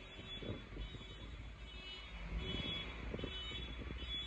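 Faint city street traffic rumble, with a few faint high-pitched tones above it.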